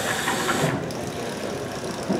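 Small autonomous wheeled robot's electric drive motors whirring as it starts driving off, over a noisy room background.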